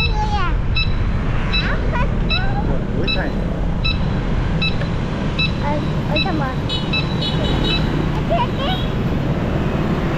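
Steady rumble of riding through city street traffic among motorbikes. Over it, short high electronic beeps repeat about every three-quarters of a second for the first six seconds, then come in a quick run about seven seconds in.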